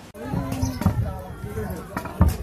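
Voices with a held, chant-like pitch over irregular low thumps, starting just after a brief drop in level.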